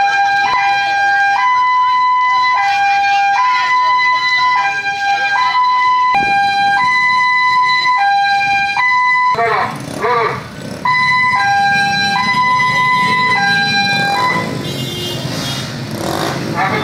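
A vehicle's two-tone hi-lo siren, alternating steadily between a low and a high note about every two-thirds of a second. It drops out briefly past the middle, while voices come through, then resumes before fading under other noise near the end.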